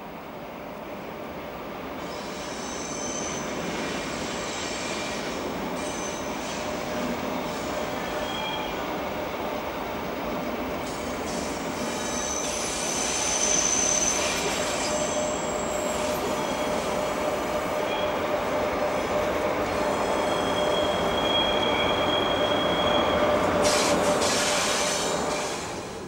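DB class 103 electric locomotive and its train rolling slowly over the station approach points, a steady rumble growing louder as it comes closer. Its wheels squeal on the curves in high, drawn-out tones that come and go.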